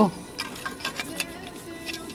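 A few light, irregular clicks and ticks as an aerosol spray can with a straw is handled and brought up to an engine's oil-pressure sensor port.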